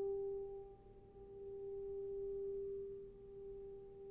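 A single piano note, struck just before, ringing on and slowly dying away. Its loudness dips and swells twice as it fades.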